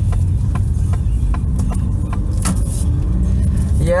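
Steady low rumble of a car's engine and tyres heard inside the cabin while it drives slowly, with light ticks about three a second.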